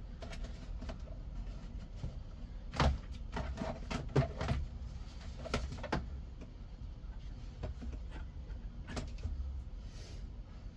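Short clicks and knocks from hands handling a steering wheel and column: a cluster a few seconds in, two more around the middle and one near the end, over a low steady rumble.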